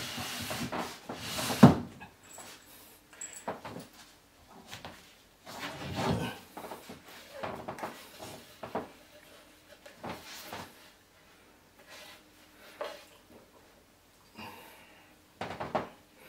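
Intermittent knocks, bumps and scrapes of chipboard flat-pack furniture panels being handled and fitted into the frame, with a sharper knock a couple of seconds in.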